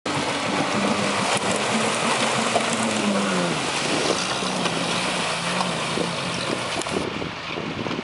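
Off-road 4x4's engine revving under load as it pushes through deep mud and water, its pitch rising and falling, with tyres churning and splashing. The splashing thins out about seven seconds in as it climbs out of the water.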